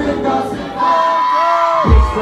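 Live pop music with singing, recorded from the audience in a club. The heavy kick drum drops out at the start, a long high note is held through the second half, and the beat comes back in just before the end.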